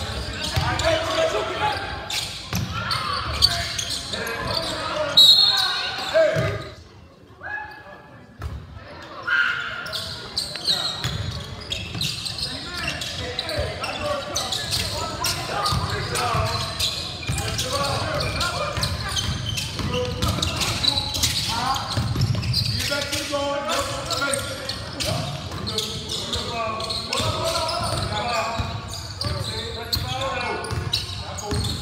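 Basketball game sound echoing in a gymnasium: a ball dribbling on the hardwood floor, with sneakers and players' and spectators' voices calling out. A loud, sharp, short sound stands out about five seconds in, and the sound briefly drops away around seven to eight seconds.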